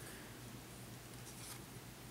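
Faint scraping of a plastic figure's base being turned on a tabletop by hand, a couple of soft rubs, strongest about one and a half seconds in, over a low steady room hum.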